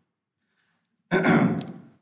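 A man's short sigh, breathed out close to the microphone about a second in and fading away.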